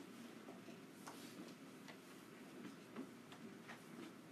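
Near silence: room tone with a handful of faint, irregularly spaced clicks and taps.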